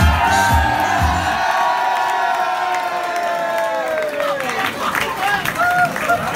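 Live band music with a steady low beat that drops out about a second and a half in, leaving a long held note that slowly falls in pitch over a cheering crowd.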